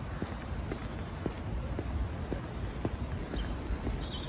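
Footsteps of a person walking outdoors at about two steps a second, over a steady low rumble.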